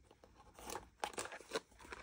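A small printed cardboard box being handled and opened by hand: a string of short, faint paper-and-card crackles and rustles.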